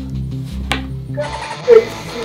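Background music with a steady low bass line that cuts off about a second and a half in, followed by a brief loud sound.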